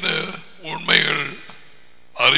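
A man's voice speaking in two short phrases, with a brief pause between them.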